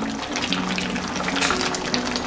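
Tomato salsa bubbling at a boil in a stainless steel pot while a spoon stirs purslane into it. Background music with held low notes plays throughout.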